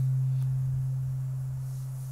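A steady low, pure tone, held and slowly fading, with no other sound on top of it.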